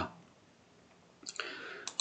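Near silence, then a faint computer-mouse click about a second and a quarter in, a short soft hiss, and another click just before speech resumes.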